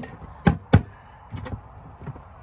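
Two sharp knocks on a rigid plastic storage-box lid, about a quarter of a second apart, struck by hand to show how tough it is.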